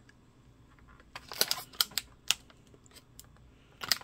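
A clear plastic clamshell toy case being handled, giving a handful of sharp plastic clicks and snaps, most of them in the middle second or so.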